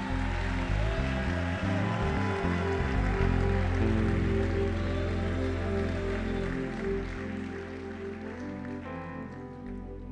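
A congregation clapping and applauding over background music. The clapping thins out over the last couple of seconds while the music carries on.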